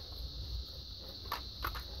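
Plastic LEGO model being handled, with a few faint clicks in the second half as its wings are folded down, over a steady high whine in the recording.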